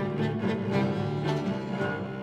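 Violin and cello playing a duet, the cello holding low notes beneath the violin's line, the notes changing several times a second.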